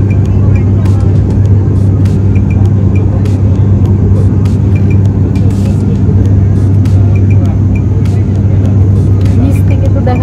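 Turboprop airliner in cruise heard from inside the cabin: a loud, steady drone of the engines and propellers with a strong low hum.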